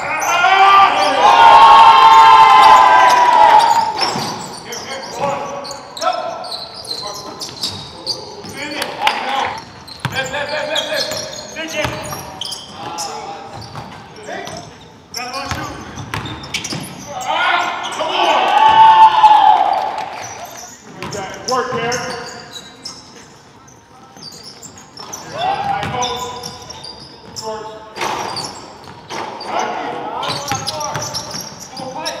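Basketball dribbled and bouncing on a hardwood gym court, with footsteps and knocks, echoing in the hall. Loud shouting voices rise over it at the very start and again a little past halfway.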